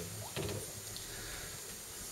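Quiet room tone with a few faint clicks about half a second in.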